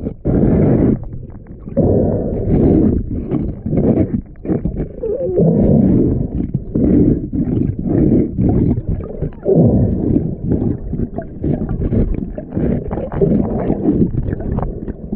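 Muffled underwater noise from a submerged head-mounted camera, rising and falling in loud surges about once a second as the swimmer moves in the water.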